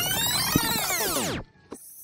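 Electronic transition sound effect: a dense sweep of many pitches gliding up and then falling away, cutting off about a second and a half in.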